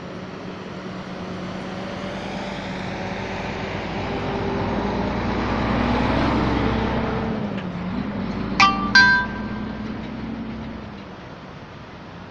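A motor vehicle passing close by, swelling to a peak about halfway and fading away, its engine pitch dropping as it goes past. Just after it passes, a horn gives two short toots.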